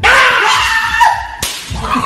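A sudden loud crash-like noise breaking in over music with a steady beat, with a tone sliding down in pitch about a second in and a sharp crack about one and a half seconds in.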